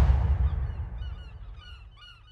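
The music's last hit dies away into a pause. From about half a second in, a flock of birds calls faintly in many short, quick calls.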